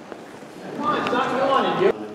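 Several people's voices talking at once, unintelligible, loud in the second half and cut off abruptly near the end.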